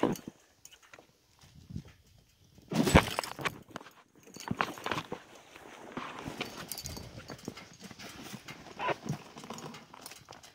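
A wicker hot-air-balloon basket hitting the ground on landing: one loud thump about three seconds in, then a run of smaller bumps and scraping as it is dragged across a ploughed field, dying away near the end.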